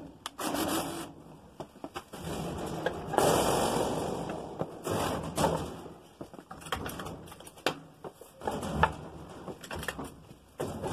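Cordless drill driving a self-tapping screw through a 1.6 mm steel sheet into the box section behind it, with one grinding burst of about a second and a half from about three seconds in. Shorter grating bursts and sharp knocks come from the big sheet being handled and pressed into place.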